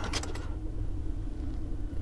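Low steady hum, with a few light clicks shortly after the start as the plastic display base of a model car is handled.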